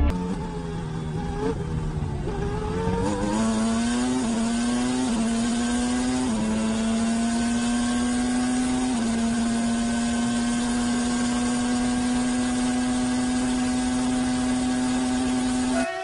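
Formula One car's V10 engine at high revs, heard from the onboard camera. The pitch climbs over the first few seconds with a few small steps at the gear changes, then holds one steady high note flat out.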